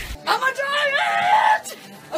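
A woman shrieking in a high pitch: a quick shout, then a rising cry held for about half a second before it breaks off.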